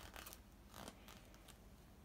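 Faint rustling of paper as a journal page is turned and a folded paper insert is handled, a couple of soft rustles near the start and just under a second in.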